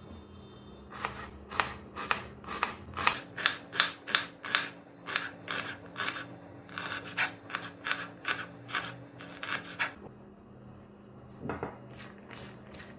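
Kitchen knife slicing an onion on a plastic cutting board: a steady run of cuts, about three a second, each blade stroke tapping the board, stopping about ten seconds in.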